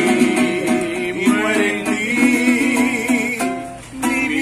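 A man singing long, wavering held notes over a small acoustic guitar strummed in a steady rhythm.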